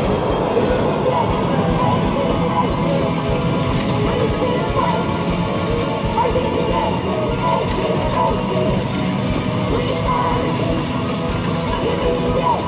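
Game music and sound effects from a Hokuto no Ken Battle Medal medal-pusher machine during a bonus battle, over the din of a game arcade.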